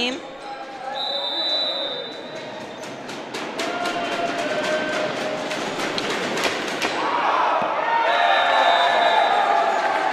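Volleyball game sounds in an echoing gym: a volleyball bouncing and being struck with a string of sharp knocks, amid players' and spectators' voices that grow louder near the end.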